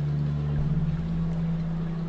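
Slow ambient relaxation music made of soft, held low notes, with the pitch shifting to a new note a little over half a second in.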